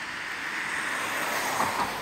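A vehicle passing by: a rushing noise that swells to a peak near the end and then begins to fade.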